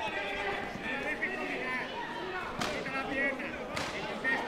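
Voices echoing in a large sports hall. Two sharp smacks about a second apart come near the end.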